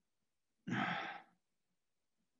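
A man sighing once, a short voiced breath lasting under a second, beginning just over half a second in.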